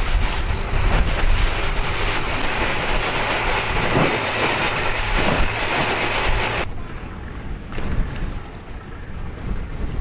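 Wind buffeting the microphone on a moving long-tail boat, over the boat's engine and choppy river water. About two-thirds of the way through, the hiss thins out and it gets quieter.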